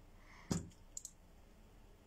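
A sharp click about half a second in, then two faint quick clicks about a second in, over low room tone.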